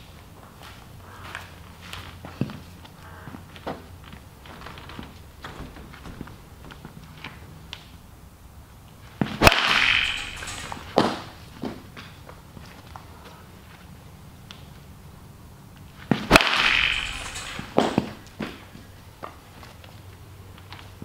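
A 2017 DeMarini CF Zen two-piece composite BBCOR bat hitting a baseball off a tee twice, about seven seconds apart. Each hit is a sharp crack with a short noisy tail, followed by a lighter knock about a second and a half later.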